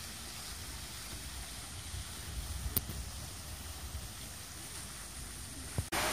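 Steady low rumble of wind on the microphone over faint outdoor background noise, with a single short click about three seconds in.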